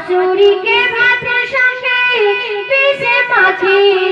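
A woman singing an Islamic gojol (devotional song) in a high voice through a microphone, her melody sliding and ornamented from note to note.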